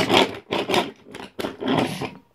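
Wooden toy trains being pushed along a wooden track, scraping and rubbing in three short bursts.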